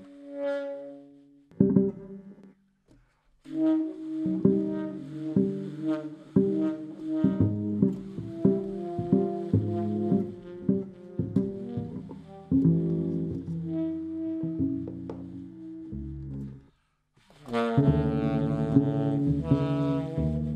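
Live jazz quartet: tenor saxophone playing over double bass, drums and hollow-body electric guitar. The music drops out briefly about three seconds in and again near seventeen seconds, then the full band comes back in louder.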